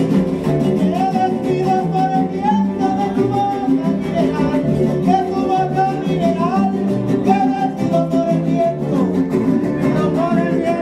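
Live acoustic Mexican folk music: several small strummed guitars (jaranas) and a guitar play a lively, steady tune, with a melody line bending above the strumming.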